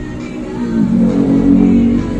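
Music playing through an ACE DP-1942 portable party box speaker from a USB stick. It swells louder with sustained low notes about a second in.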